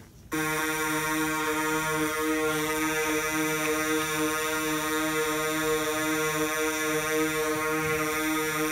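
Synthesizer music: a steady, buzzy sustained chord that starts abruptly about a third of a second in and holds without change, with a lower note pulsing beneath it.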